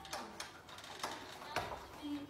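A few light clicks and knocks, about four in two seconds, as a French bulldog clambers onto a rocking baby bouncer seat and its frame shifts under the dog.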